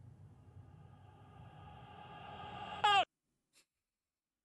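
A faint steady drone with several overtones swells slowly, then ends in a short loud wavering 'oh' that slides down in pitch, and the sound cuts off dead a little after three seconds in: the closing seconds of the video's soundtrack as it finishes playing.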